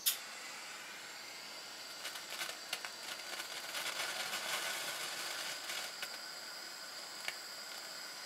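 A butane torch lit with a sharp click, then its flame hissing steadily on a small pile of basic copper glyoximate, which flares and burns with scattered small crackles over a few seconds: a mild burn, not an explosion.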